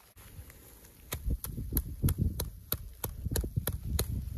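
A gloved hand taps a shovel blade laid flat on top of an isolated snow column in an extended column test: a steady series of sharp taps, about three a second, starting about a second in. The taps load the column to test whether the buried layer of near-surface facets will fracture and the crack run across the column. Here it did, on the tenth tap.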